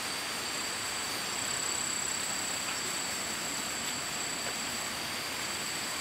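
Steady rush of flowing water from a nearby stream and waterfall, an even noise that holds unchanged, with a thin steady high whine over it.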